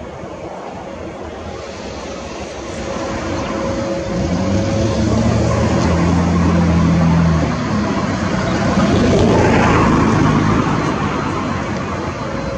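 Airbus A330-300 twin jet engines running as the airliner taxis and turns onto the runway. The sound grows louder about three seconds in, with a low hum for a few seconds and then a swell of rushing noise near the tenth second.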